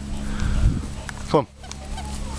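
A man's voice calling "come on" to a dog, over a low rumble in the first part.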